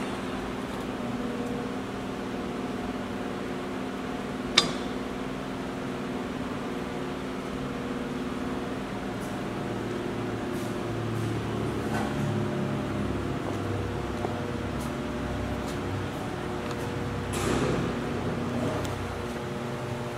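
Variable-speed electric drive of Preston-Eastin tank turning rolls running steadily, its motor and gearing giving a constant hum, with a single sharp click about four and a half seconds in.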